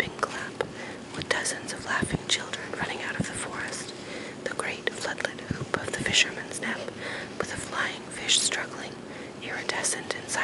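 A person whispering, reading a book passage aloud in a continuous, breathy voice with sharp hissing consonants.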